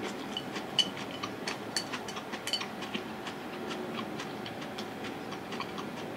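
A person chewing a mouthful of yakisoba noodles with menma: many small, irregular wet clicks from the mouth, busiest in the first three seconds and sparser after.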